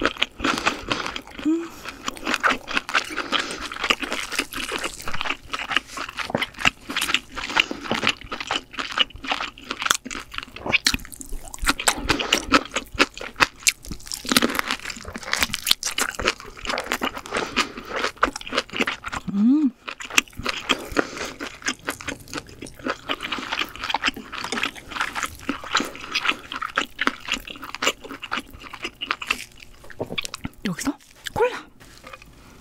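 Close-miked chewing of steamed lobster meat: a dense run of small clicks and smacks from the mouth.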